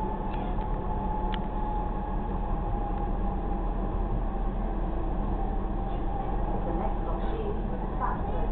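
Passenger train running along the rails, heard from inside the carriage: a steady rumble with a faint whine over the first few seconds and a single click about a second in.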